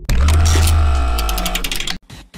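Logo-intro music sting: a deep cinematic boom hit with a sustained chord ringing over it, fading, then cut off abruptly at the end.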